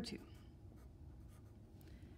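Felt-tip marker writing on paper: faint, soft strokes as a short fraction is written.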